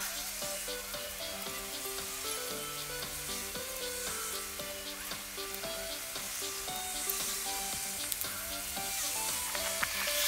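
Background music over a steady, scratchy hiss, the sound of chalk scraping over rough asphalt.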